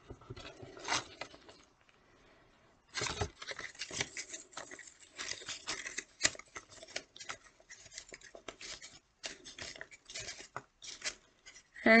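Paper rustling and crinkling in the hands as a paper lantern is pressed and glued together: small irregular crackles, a brief pause about two seconds in, then a denser run of crackling.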